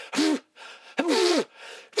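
A man gasping twice, two short breathy voiced gasps about a second apart.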